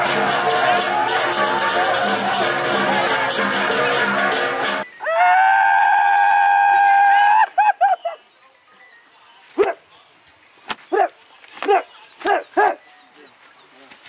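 Balinese gamelan music with fast, dense metallic percussion, which cuts off suddenly about five seconds in. A long, high, held cry follows and wavers at its end, then several short cries come a second or so apart.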